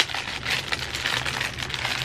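Clear plastic sock packaging crinkling as hands pull it open, a dense stream of small crackles.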